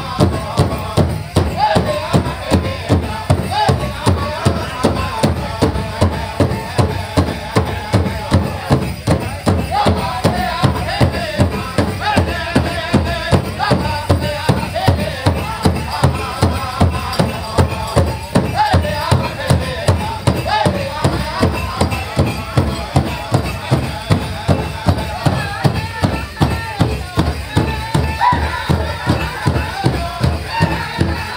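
Powwow drum group playing an intertribal song: a large drum struck in unison at a steady beat of about two strokes a second, with the singers' voices carrying over it.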